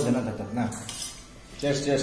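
Metal spoon clinking and scraping against a stainless steel plate while eating. Two louder bursts come at the start and near the end, with a few sharp clinks between them.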